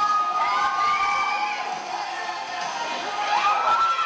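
Audience cheering and shouting, with long high-pitched held shouts rising over the crowd near the start and again about three seconds in.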